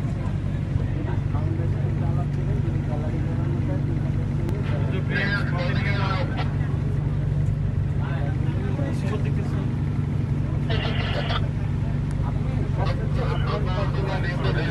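A boat's engine running with a steady, even drone, heard from on board, with several short bursts of people's voices over it.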